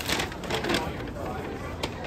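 Faint background voices in a shop, with a few light clicks, one sharper click near the end.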